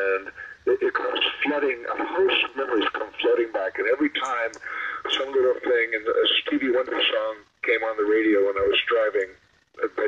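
Speech only: one voice talking steadily with brief pauses, with a thin, radio-like sound.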